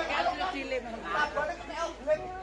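Chatter of many people talking at once.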